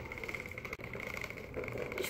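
Plastic toy push lawnmower rolling across a tiled floor, its wheels and mechanism giving a quiet, steady rattling whir.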